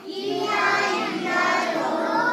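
Several young children's high voices singing together in drawn-out, overlapping tones.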